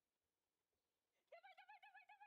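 Near silence, then just over a second in a dog starts whining in a high, quickly wavering pitch, the kind of eager whine a dog gives while waiting its turn to run.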